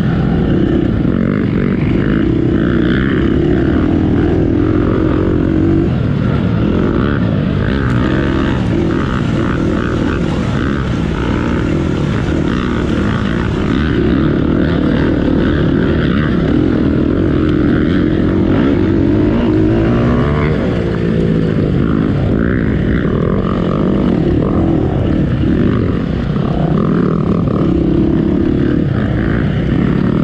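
Off-road dirt bike engine ridden hard on a trail, running without a break, its note rising and falling with the throttle.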